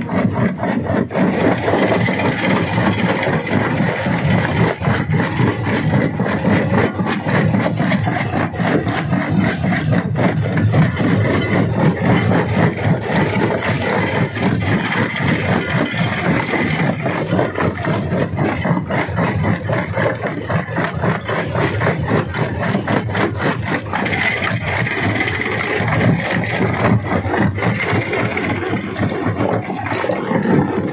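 Rock crusher at work, stone clattering and grinding through it in a dense, continuous rattle of knocks, over the steady running of the machine.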